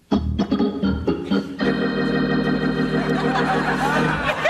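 Organ music: a few short stabbed chords, then one chord held for about two and a half seconds.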